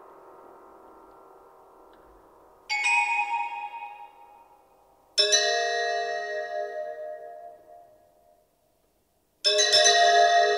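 Contemporary chamber-ensemble music: a held chord fades away, then three bell-like chords are struck one after another, each ringing out and dying away. There is a brief silence before the last one, near the end.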